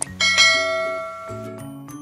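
A click followed by a bright bell-like ding, from a subscribe-button animation sound effect; the ding strikes about a quarter second in and rings out for over a second. Background music with a simple melody plays underneath.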